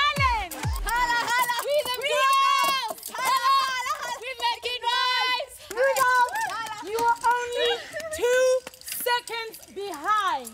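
Several excited people shouting and calling out in high-pitched voices whose pitch rises and falls sharply, in the manner of cheering someone on, with no clear words.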